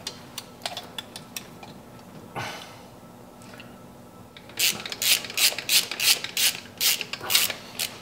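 Metal clicking and rattling of hand tools and a new four-barrel carburetor being fitted onto the intake manifold. A few light clicks and a short scrape come first, then from about halfway a run of sharp clicks, three or four a second.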